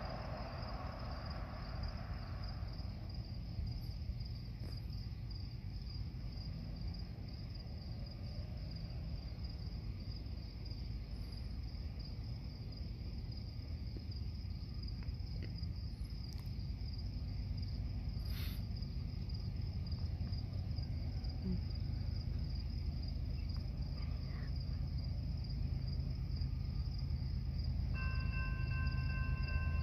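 Crickets chirping steadily over a low rumble from the approaching train's diesel locomotives, which grows slowly louder. A noise fades away in the first three seconds.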